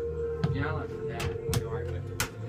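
Music with a steady held note over a low bass line, voices talking under it, and two sharp knocks.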